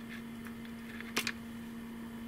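Quiet room tone with a steady low hum, broken by a single short click a little over a second in.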